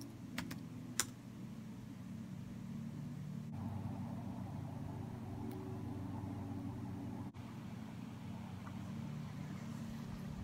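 Steady low hum of room noise, with two sharp clicks about half a second and a second in.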